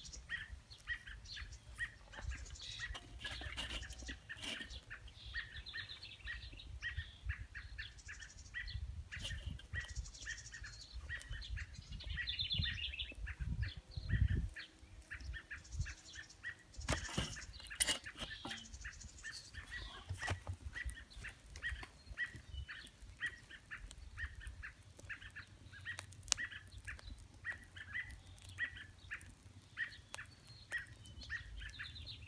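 Birds chirping and calling steadily, with a low rumble underneath. A few sharp knocks come around the middle as an oak log is set down onto the hot charcoal in a Weber kettle grill.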